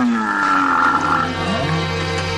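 A grizzly bear's long roar, falling in pitch and fading out within the first second, with background music that swells into held notes in the second half.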